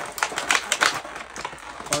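Clear plastic packaging tray crinkling and crackling as an action figure is tugged out of the plastic parts that hold it in, a rapid run of sharp crackles.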